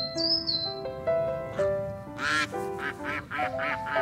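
Sandhill cranes calling over soft piano music. About halfway through comes one loud rolling call, then a quick run of shorter calls, about four or five a second.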